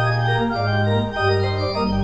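Pipe organ playing held chords, with the bass line stepping from note to note about every half second.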